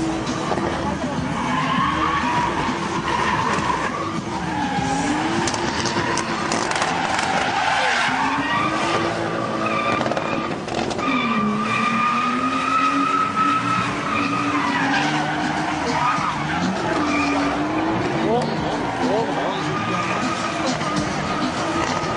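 Toyota Supra drifting under sustained throttle. The engine is revving high, and its pitch dips and climbs back several times as the car slides, with tyres squealing from the spinning rear wheels.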